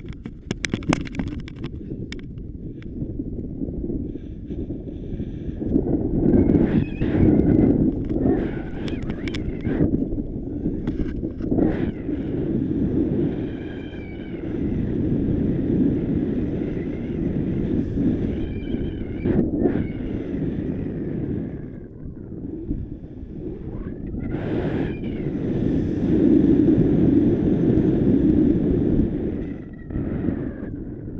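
Wind buffeting an action camera's microphone during a tandem paraglider's launch and flight: a heavy, low rushing that swells and eases. A few sharp clicks come in the first couple of seconds, and brief high sliding tones sound a few times.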